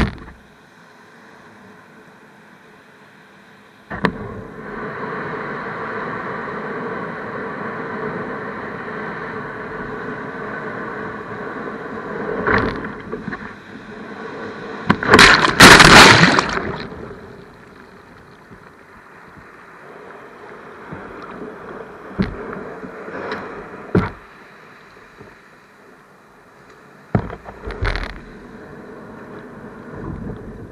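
Ocean surf and water washing against the bow of a river board as it pushes out through breaking waves, the loudest moment a wave breaking over the bow about halfway through. Several short knocks and splashes follow near the end.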